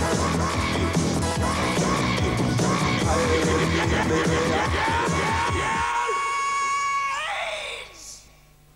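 Loud rock theme music for a TV music show's opening titles, with a driving beat. Near the end the beat drops away, leaving a held high note that slides upward and fades out.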